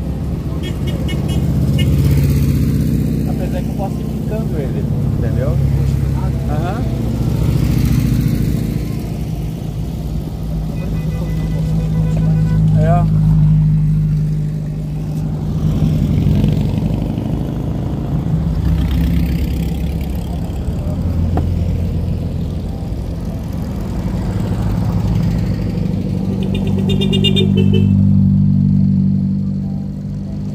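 A line of dune buggies driving past one after another, their engine sound swelling and fading every few seconds as each goes by, with people's voices mixed in.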